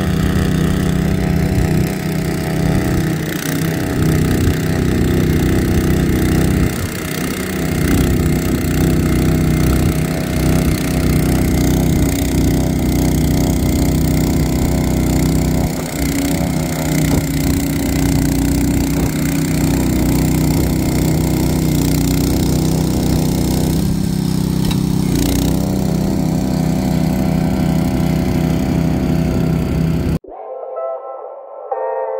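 Single-stage snowblower's small engine running steadily as it clears deep snow, dipping briefly in level a few times.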